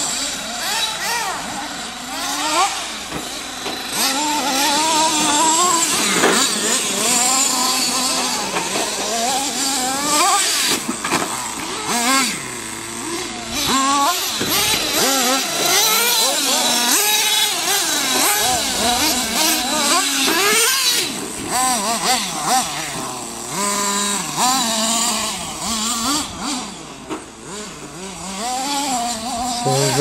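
Small glow-fuel engines of nitro RC buggies revving hard and easing off as the cars race around a dirt track, their high whine rising and falling over and over.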